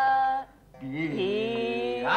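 A voice singing long held notes in a classical vocal exercise. The first note breaks off about half a second in, and after a short pause a lower note slides up into place and is held.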